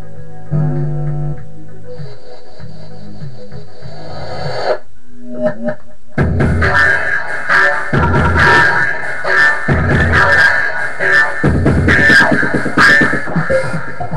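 Electronic beat with synth and bass: sparse held notes for the first few seconds, then after a brief break about six seconds in, a full drum pattern comes in with the synth chords.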